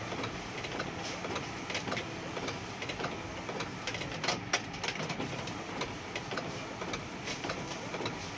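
Epson L8050 six-colour ink tank printer printing a photo. The print-head carriage shuttles back and forth across the page with a steady mechanical whirr, many small ticks from the paper feed, and a few sharper clicks about halfway.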